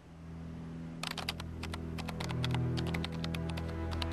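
Typing on a computer keyboard, a quick irregular run of keystroke clicks starting about a second in, over music with low sustained tones that swell in at the start.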